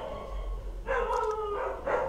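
A drawn-out animal call, about a second long and falling slightly in pitch, heard in a pause in the talk.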